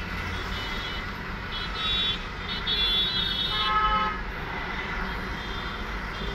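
Steady low background hum, with several short, high-pitched held tones sounding between about one and a half and four seconds in, the last one lower in pitch.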